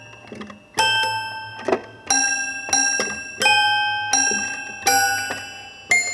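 A small wooden toy piano being played in a slow tune of single notes and chords, each struck note ringing on and fading.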